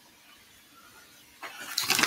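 Quiet room tone, then about one and a half seconds in a crackly rustle builds up: a plastic bag of shredded mozzarella being handled while cheese is added to flatbread pizzas.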